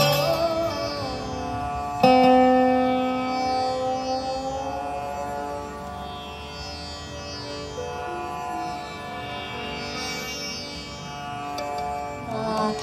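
Indian lap slide guitar (the Crystal Slide) playing a slow melody in Raga Bhageshwari with the notes gliding into one another. A note struck about two seconds in rings on and slowly fades.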